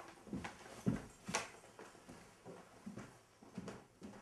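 Footsteps of a person walking away across a room: six or seven hard steps about half a second apart, with one sharper click near the middle.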